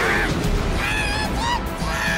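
Anime battle soundtrack: background music with short high-pitched cartoon creature cries over it, one at the start and more about a second in, during a clash of attacks.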